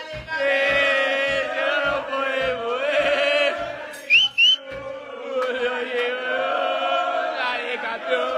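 A group of men chanting a football song together, with low thumps keeping time about twice a second through the first half. About four seconds in, two short rising whistles cut through the chanting.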